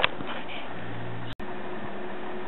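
Steady hum of the Cooler Master HAF 932 case's cooling fans running, with faint steady tones under it. A click at the start, and a brief dropout about two thirds of the way through.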